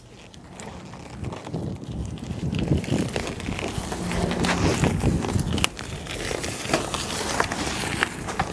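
Hyper Wave mountain bike being ridden over pavement, heard from close to its frame: a steady rolling rush with scattered clicks and rattles, getting louder about two seconds in.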